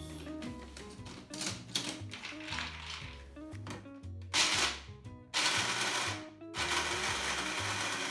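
Small personal blender grinding raw almonds in three pulses in the second half, with short breaks between them, over background music.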